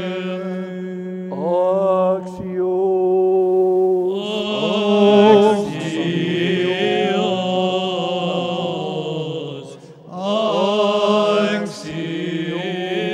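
Byzantine liturgical chant: voices singing a melody over a steady held drone note, with a brief break about ten seconds in.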